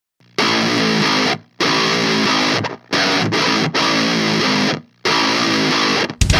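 Distorted electric guitar playing a heavy hardcore riff in phrases, cut by short dead stops about a second and a half apart.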